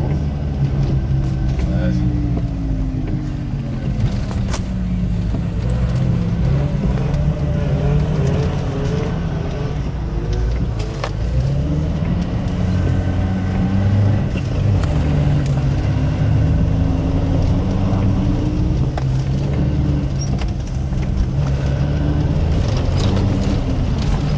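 Car engine and road noise heard from inside the cabin while driving, the engine note rising and falling as the car speeds up and slows.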